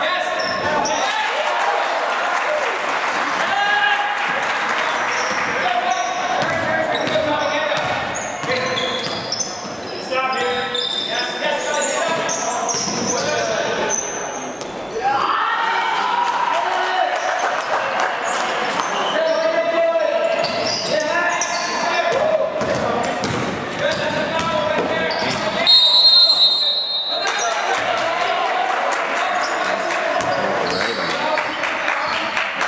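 Basketball bouncing on a hardwood gym floor during play, with players' and spectators' voices echoing through the hall. Near the end a loud, high whistle blast lasting about a second is the loudest sound.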